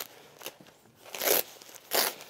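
Hook-and-loop (Velcro) fastener on the bottom back flap of a Rev'it Sand 2 textile motorcycle jacket being ripped open. It comes in short tearing rips, the longest about a second in and another at the end.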